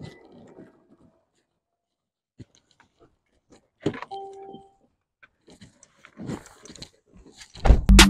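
Mercedes-Benz car door being opened: a sharp click of the handle about four seconds in with a brief beep, then light handling noises and a louder thump just before the end.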